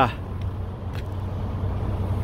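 Steady low hum of an idling vehicle engine, with a faint click or two.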